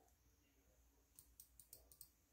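Computer gaming mouse buttons clicking: about five quick, faint clicks in the second half.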